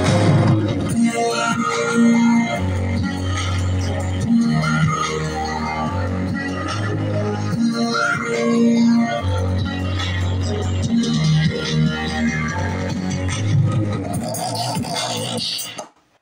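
Electronic music with a steady bass line played loud through a pair of small JBL Pro computer speakers, heard through a phone's microphone; to the owner the speakers sound worse than expected and lack bass. The music cuts off suddenly near the end.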